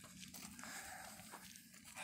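Near silence: faint rustling with a couple of soft crackles.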